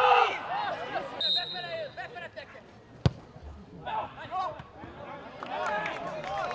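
Loud shouts from players on a football pitch, then a short blast of the referee's whistle about a second in, stopping play. A single sharp knock comes near the middle, followed by more scattered calls.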